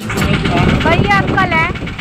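A woman's raised voice speaking over a steady low engine rumble from a vehicle at the roadside.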